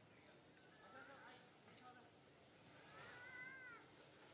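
Faint high-pitched calls of a baby macaque: short squeaks about a second in, then a longer whining cry near the end that rises and falls in pitch.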